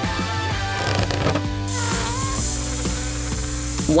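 Background music, joined about two seconds in by a steady hiss of air escaping from a latex balloon as it deflates.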